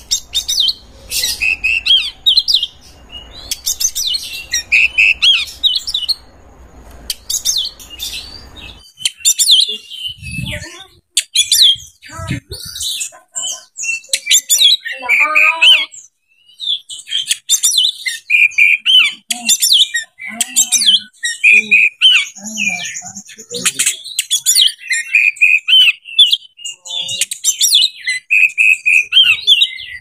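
Oriental magpie-robin singing a long, varied song of whistled and chattering phrases, separated by short pauses. A faint low background hum cuts out about nine seconds in.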